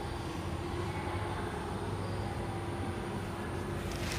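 Steady low background rumble with a faint continuous hum, with no distinct strokes or knocks.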